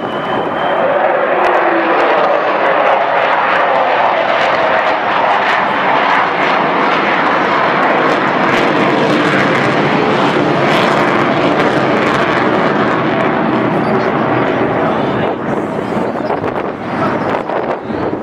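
Avro Vulcan XH558's four Rolls-Royce Olympus turbojets running loud and steady as the delta-wing bomber banks overhead, with a high whistling tone rising in the first second. The sound wavers and eases a little in the last few seconds.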